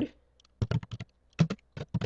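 Computer keyboard keys clicking as a word is typed: a run of quick keystrokes starting about half a second in, broken by a short pause before a few more near the end.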